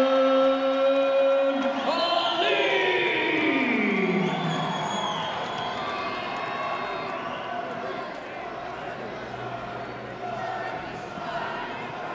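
Ring announcer drawing out the end of the winner's name in one long held call that then slides down in pitch, over arena crowd cheering that gradually dies down.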